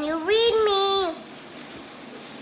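A young girl singing one long held note in a child's voice, ending about a second in.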